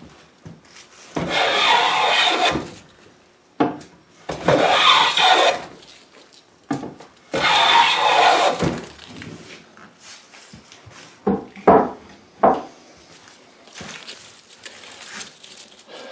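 Restored vintage Stanley hand plane shaving the edge of a 5/4 board: three long strokes, each a rasping hiss as the sharp blade lifts a long continuous curled shaving. A few short sharp knocks follow near the end.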